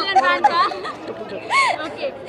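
People talking: short stretches of speech with chatter around them.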